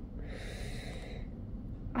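A woman sniffles once through her nose while tearful, a short breathy intake lasting about a second near the start.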